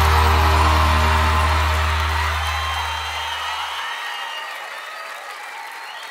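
A live sertanejo band's final held chord, with deep bass, ringing out and fading away over about four seconds, while the audience applauds and cheers.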